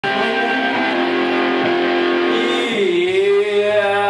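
Live rock band playing amplified guitars, with long held notes; about three seconds in, the leading note slides up to a new held pitch.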